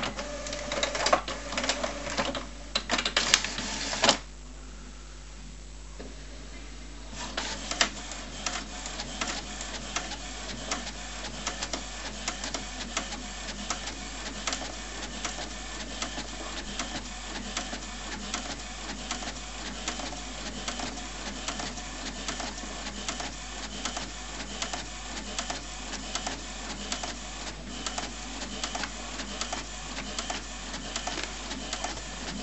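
HP Photosmart C4485 inkjet all-in-one copying a document. The first four seconds hold a loud, irregular clatter of mechanism, followed by a short, quieter steady hum. From about eight seconds on comes a steady, rapid ticking as it prints, with the page feeding out near the end.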